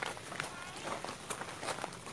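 Footsteps of several people crunching on dry leaf litter and dirt along a forest trail, in irregular sharp crackles, with faint voices.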